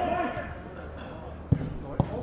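A football being struck: two sharp thumps about half a second apart near the end, after spectators' voices from the stands.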